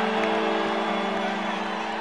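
Electric guitar chord ringing out and slowly fading, several held notes together, over a murmuring arena crowd.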